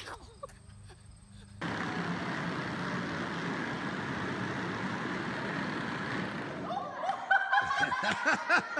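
Steady, echoing noise of children riding a bicycle and a battery-powered ride-on toy jeep across a concrete floor in a large metal-walled building. Near the end, a child laughs.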